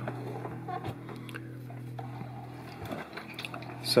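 A small electronics control box being turned around on a workbench: light scrapes, rustles and small knocks of handling, over a steady low hum.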